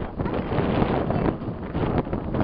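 Wind buffeting the microphone: a loud, steady rushing noise with no other clear sound.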